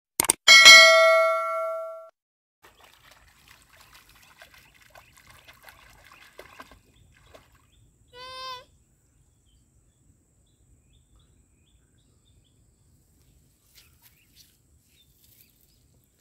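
Subscribe-button animation sound effect: a click, then a bright notification-bell ding that rings out and fades over about a second and a half.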